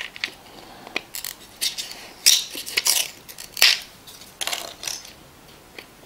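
Paper inner seal of a plastic supplement bottle being scratched and torn open with a small tool: a string of short, scratchy tearing and scraping sounds about half a second apart.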